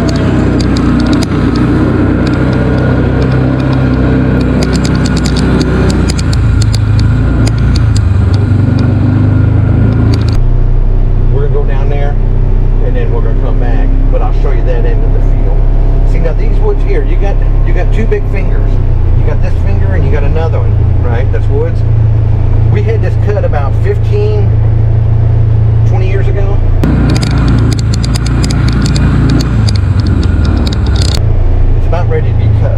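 Polaris Ranger XP 1000 UTV's twin-cylinder engine running steadily as the vehicle drives through tall grass, with muffled voices in the cab.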